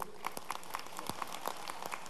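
Scattered, light applause from an audience: many irregular individual hand claps, faint under the room tone.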